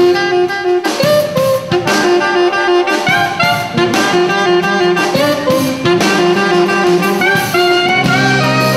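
Live jazz band playing, with saxophone and brass (trumpet and trombone) over a drum kit.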